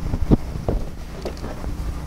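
Wind buffeting the microphone, with two short clicks in the first second as the rear hatch of a 2010 Toyota Prius is unlatched and swung up.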